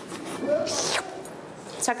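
A person's voice making a short hissing, slurping sucking noise, about half a second long, that mimics plant roots drawing up water.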